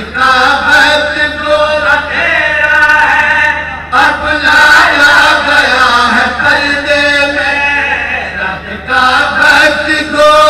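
A zakir's chanted, sung recitation of verse, one man's voice through a microphone, in long melodic phrases with short breaks just before four seconds and near nine seconds in.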